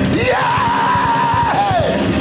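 A voice holding one long yelled, sung note over church music: it rises at the start, holds steady for about a second, then falls away near the end.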